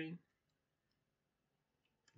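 Near silence with a few faint, brief clicks from computer input as code is edited.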